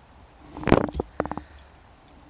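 A short breathy huff close to the microphone, about half a second in, followed by a few quick clicks.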